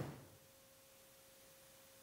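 Near silence: room tone with one faint, steady, high-pitched tone.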